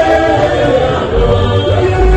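A mixed gospel choir singing together into microphones, holding long notes in harmony, with a low bass swelling underneath about one and a half seconds in.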